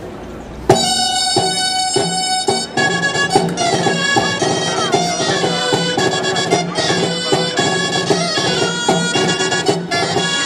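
Traditional Spanish folk dance music played on a loud, reedy wind instrument, starting abruptly under a second in with a few long held notes, then breaking into a lively melody over a regular beat.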